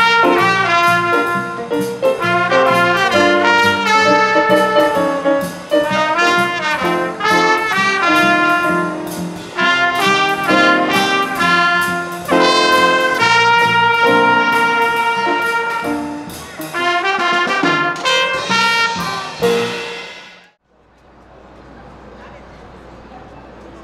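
Live band with a horn section of trumpets playing a jazzy brass line over a drum kit, the drum hits keeping a steady beat. The music cuts off abruptly near the end, leaving a low, steady hum.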